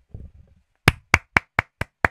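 A quick run of even hand claps, about four or five a second, starting about a second in.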